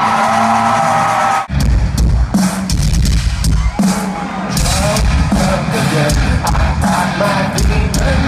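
Live metal concert: a held vocal note rings out over the PA, then about one and a half seconds in there is an abrupt cut to the band playing loud, with pounding drums and heavy bass, heard from within the crowd.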